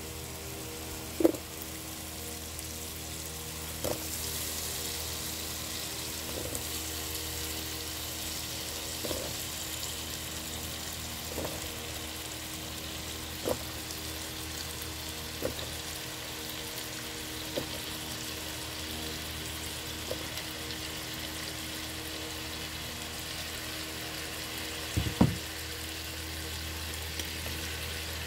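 Curry paste sizzling in a hot pot as raw potato chunks go in. The sizzle grows louder a few seconds in, with light knocks every couple of seconds and a steady low hum beneath.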